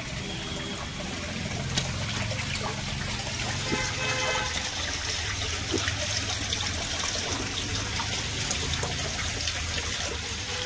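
A thin stream of water trickling down a rock face and splashing over hands and onto the stone, steady throughout.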